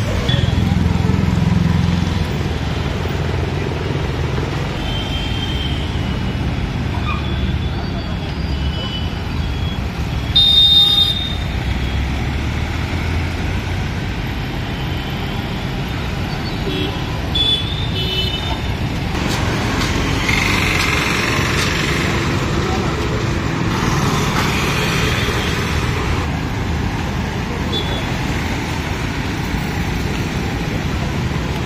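Road traffic at a busy junction: motorcycle, scooter, auto-rickshaw and car engines running and passing. A short horn toot sounds about ten seconds in, and a fainter one a few seconds later.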